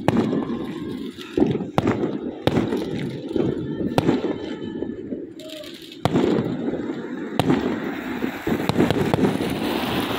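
Fireworks going off: sharp bangs at irregular intervals of a second or two over a steady low rumbling noise.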